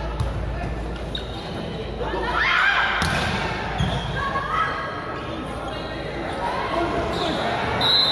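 A volleyball struck during a rally in an echoing indoor sports hall, with a sharp hit about three seconds in. Players and spectators shout and cheer throughout the play.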